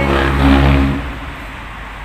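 Motor vehicle engine running close by on a street, loudest about half a second in, then fading away.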